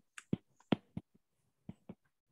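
A stylus tapping on a tablet's glass screen during handwriting: about six short, faint, sharp clicks, unevenly spaced.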